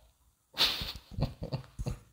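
A man's breathy laughter: a sudden burst of breath about half a second in, then several short pulses of laughing breath.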